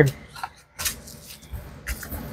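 Paper and a cardboard mailer being handled and pressed flat: scattered rustles and light knocks, with one sharper snap a little under a second in.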